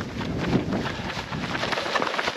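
Wind buffeting the microphone of a camera carried by a running trail runner, a steady noisy rumble with the scuff of running footsteps underneath.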